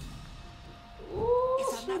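A person's drawn-out vocal sound, about a second long, starting a little after one second in and bending up in pitch before falling away, after a quiet start.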